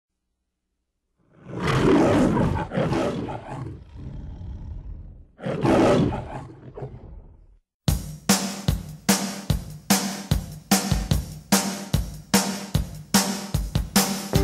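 The MGM opening-logo lion roar, heard twice, each roar a couple of seconds long. About eight seconds in, music with a steady drum beat starts.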